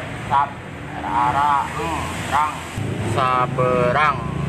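A man's voice sounding out a word one syllable at a time, in short separate drawn-out calls, over a low steady rumble.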